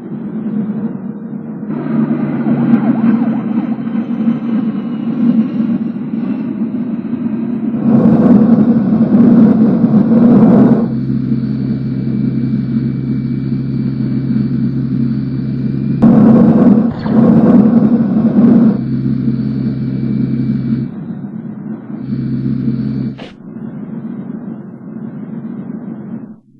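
Steady, loud vehicle engine rumble, a cartoon sound effect. It surges louder twice, about eight seconds in and again about sixteen seconds in, each surge lasting a few seconds.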